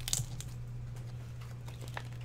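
Brief rustle and light scrape of a trading card being picked up and handled on a desk mat, followed by a few soft clicks and taps, over a steady low hum.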